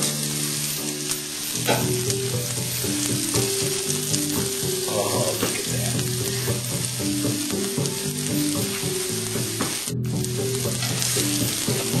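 Bacon-wrapped hot dog and sliced onions sizzling steadily in a griddle pan on high heat.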